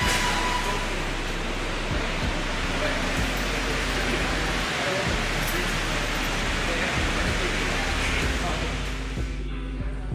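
Indoor shopping-mall ambience: a steady rushing background noise with faint distant voices and background music in it.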